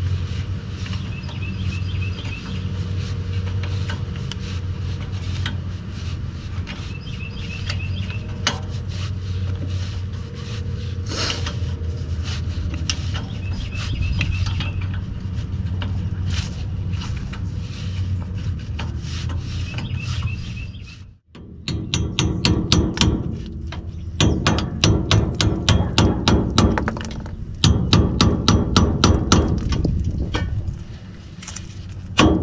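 Hand tools on the rusty front driveshaft U-joint bolts of a 1956 International S-120 truck: scattered metallic clicks over a steady low hum, then, after a sudden break about two-thirds in, rapid rhythmic runs of sharp metal clicks, several a second.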